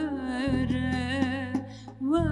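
A woman singing a slow, ornamented Kurdish folk melody in makam Hüzam, holding a long wavering note over low sustained instrumental accompaniment. The phrase fades out near the end.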